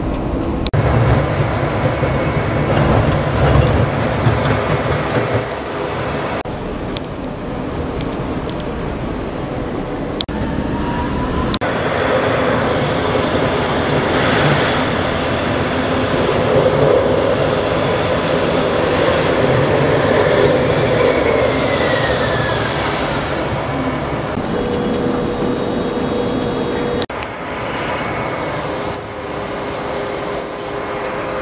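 A Prague tram heard from inside while riding, its motors and steel wheels on the rails running steadily, with a short rising whine about ten seconds in and a falling whine a little past twenty seconds as it speeds up and slows.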